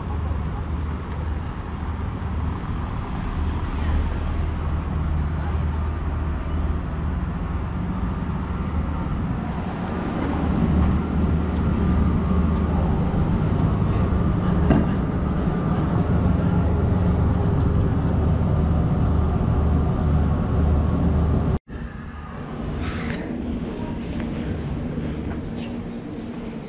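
Steady low machine hum with a few faint tones over it. It grows louder about ten seconds in and cuts off abruptly near the end, leaving quieter background noise.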